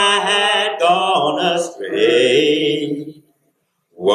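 A man singing a hymn unaccompanied into a microphone: a held note with vibrato, then a few sung phrases that stop about three seconds in, followed by a short silence.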